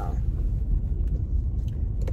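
Steady low rumble of a car's engine and road noise heard inside the cabin while driving, with one sharp click near the end.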